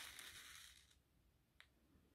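Sewing thread drawn by hand through cotton fabric during a backstitch: a faint swish about a second long, then a single small tick near the end.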